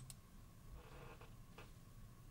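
Near silence: faint studio room tone, with one faint click about one and a half seconds in.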